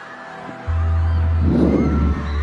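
Electronic concert intro music over an arena sound system: after a quiet moment, a loud, very deep synth bass comes in suddenly, with a short rumbling swell of noise just before the end.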